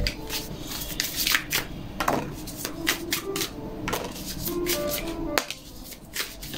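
Tarot cards being shuffled and handled by hand: a run of soft, irregular clicks and flicks of card stock, over faint background music.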